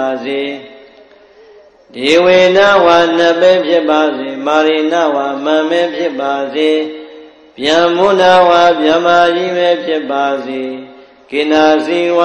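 A voice chanting in long melodic phrases with gliding pitch, with short pauses between them: new phrases begin about two seconds in, at about seven and a half seconds, and near the end.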